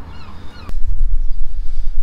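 Wind rumbling on the microphone, with one sharp click under a second in.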